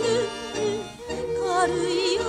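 A woman singing a 1955 Japanese radio song in a classical, operatic style with wide, even vibrato, over orchestral accompaniment; the sound briefly drops about a second in, between phrases.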